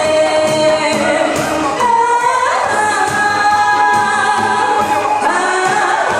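A woman singing into a microphone over instrumental accompaniment with a steady beat. She holds long notes, with a climb in pitch about two and a half seconds in.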